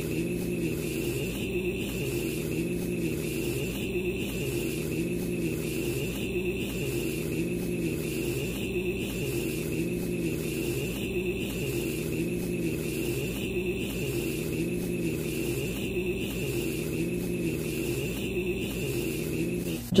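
A steady, looped drone with a high whine above it, the same pattern repeating about every two and a half seconds: an edited, processed audio loop.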